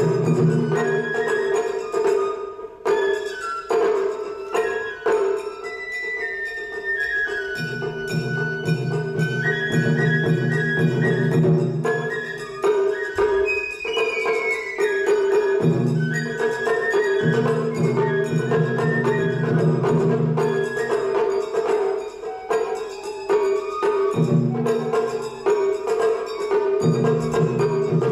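Kawagoe matsuri-bayashi festival music: a bamboo flute melody over steady strokes of taiko drums, the small shime-daiko and the large ōdō on its stand.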